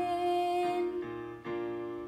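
Piano chords played on a digital keyboard, new chords struck about a second in and again about half a second later, each left to ring.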